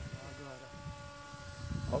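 Radio-controlled paramotor trike's motor and propeller in flight, heard from a distance as a faint steady whine.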